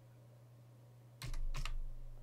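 Computer keyboard typing: a quick burst of a few keystrokes about a second in, after a near-quiet start.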